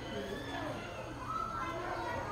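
Indistinct chatter of children and other visitors' voices, with one higher voice held briefly past the middle.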